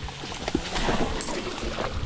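A hooked trout thrashing at the surface of a shallow creek, water splashing irregularly with a few sharp slaps.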